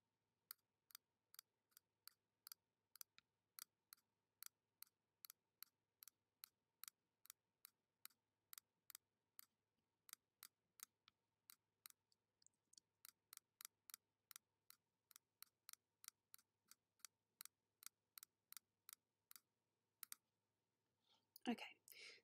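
Faint computer mouse button clicks in a quick, fairly even run, about two to three a second with a short pause about halfway through. Each click drops an anchor point of a straight-line pen-tool path.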